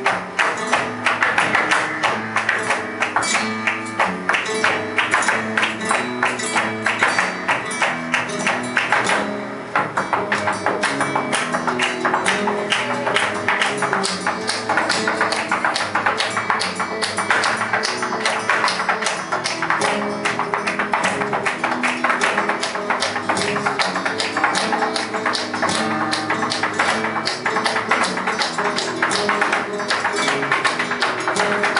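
Live flamenco without singing: a Spanish guitar playing under a dense, rapid run of sharp claps and taps from palmas (hand-clapping) and the dancer's zapateado footwork. The rhythm eases briefly about nine seconds in, then drives on.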